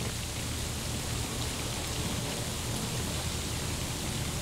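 Steady hiss with a low hum underneath and no distinct events: the recording's own background noise while the room is hushed.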